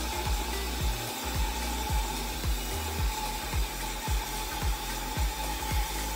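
Hand-held hair dryer blowing steadily with a high whine, under background music with a steady thudding bass beat about twice a second.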